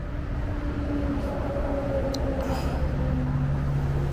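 Steady low hum of a motor vehicle's engine running, with the tone shifting lower about three seconds in.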